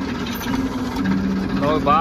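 Diesel tractor engine idling steadily, a low even hum; a man's voice starts near the end.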